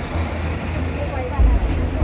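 Indistinct voices of people standing around, over a heavy low rumble that swells suddenly about one and a half seconds in.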